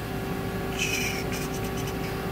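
DMG Mori CNC milling machine running a cut with its spindle at about 8500 rpm: a steady hum with a constant tone. A brief hiss comes about a second in.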